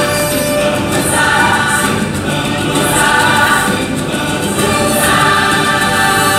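A choir singing over the stage show's music, loud and continuous, with no break.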